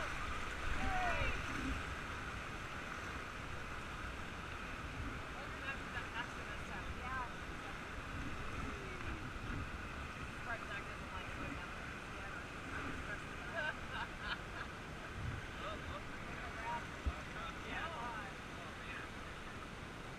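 Fast-flowing whitewater river rushing steadily around an inflatable raft, with wind rumble on the microphone. Faint voices come through now and then.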